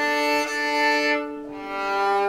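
Violin bowed in two long sustained notes, the second lower, starting about a second and a half in.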